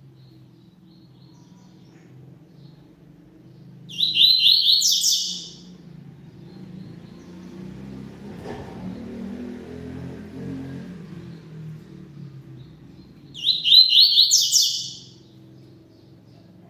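Double-collared seedeater (coleiro) singing two short songs about nine seconds apart, each about a second and a half of quick repeated notes ending in a higher phrase. A faint low hum runs underneath.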